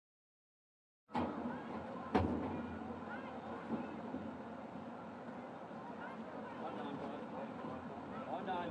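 Outdoor racetrack ambience at the starting gate while horses are loaded: a steady wash of distant crowd and voices that starts suddenly after a second of silence, with a single sharp knock about two seconds in.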